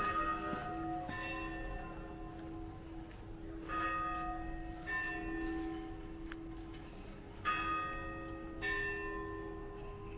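Church bells ringing: pairs of strokes about a second apart, the pair repeated three times, each stroke ringing on long after it is struck.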